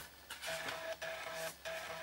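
Toshiba T2100CT laptop's floppy disk drive reading an MS-DOS 6.22 setup disk as the installer copies files from it: a steady buzz in stretches of about a second, broken by short clicks as the head steps.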